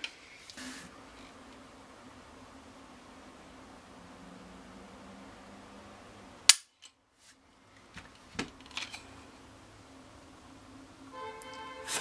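Ruger 22/45 Lite .22 pistol dry-firing as a trigger pull gauge draws its trigger: one sharp click of the hammer falling as the trigger breaks, about six and a half seconds in. A smaller click and light handling noise follow.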